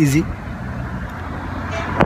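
Road traffic noise from a car coming up the road, an even rushing sound that grows slowly louder.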